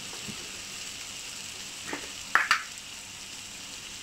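Onion-tomato masala sizzling steadily in oil in a frying pan. A little after the middle come a few sharp knocks of a wooden spatula against the pan, the loudest sounds.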